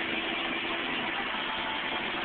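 Steady engine and road noise heard inside the cabin of a moving car.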